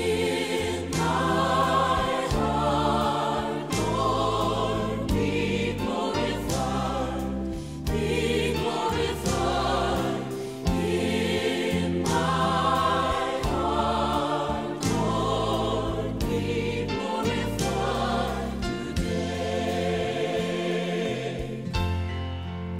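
Praise and worship sing-along song: a choir singing a chorus with vibrato over an instrumental accompaniment.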